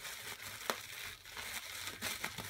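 Tissue paper crinkling and rustling as a wrapped bundle is handled and pulled open, with one sharper crackle under a second in.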